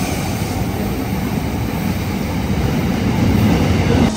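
Freight train passing through a station platform: a steady, loud rumble of locomotive and wagons rolling by close at hand.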